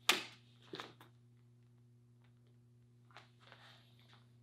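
Sharp slap right at the start, then two lighter slaps just under a second in, from the strikes and steps of a praying mantis kung fu form on a foam mat; softer rustling of movement near the end, over a steady low hum.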